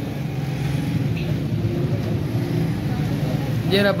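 Indistinct men's voices talking over a steady low hum, with one man's voice coming in clearly near the end.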